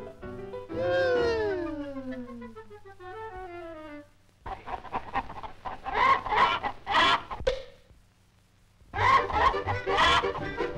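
Cartoon hens clucking and cackling together in a chorus of short bursts, starting about halfway in and again near the end with a brief pause between. Before them, a long falling musical glide plays over the score.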